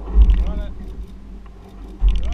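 Low rumble of wind buffeting the microphone on a boat at sea, surging near the start and then easing. A person calls out briefly within the first second.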